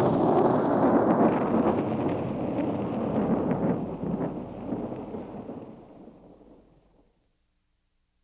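Rolling thunder: the rumbling tail of a thunderclap, with crackles through it, fading away over about six seconds into silence.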